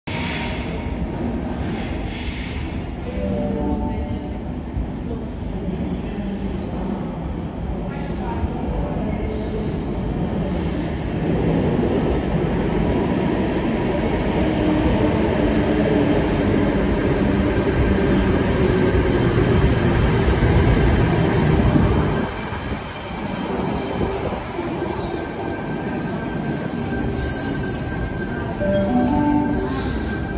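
Sydney Trains H-set (OSCAR) electric train running into an underground platform from the tunnel and along it. The rumble of wheels on rails echoes in the enclosed station, grows louder for about ten seconds as the cab reaches and passes, then drops suddenly about 22 seconds in, while the carriages keep rolling by.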